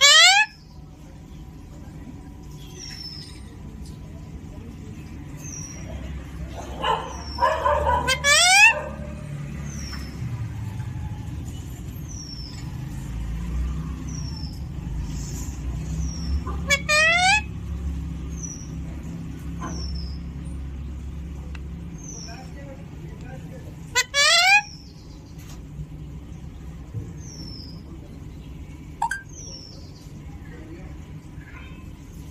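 Alexandrine parakeet giving four sharp, loud screeches several seconds apart, with a stretch of talk-like mimicry just before the second one. A faint high chirp repeats steadily in the background over a low rumble.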